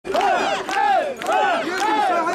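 Crowd of mikoshi carriers chanting in unison as they shoulder a portable shrine, many voices calling together in a steady rhythm of about two calls a second.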